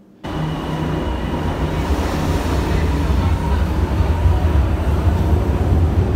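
Milan metro train moving along the platform, a loud steady rumble with a faint high whine, starting suddenly just after the start.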